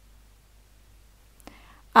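Near silence: quiet room tone, with a faint click and a soft intake of breath near the end, just before speech begins.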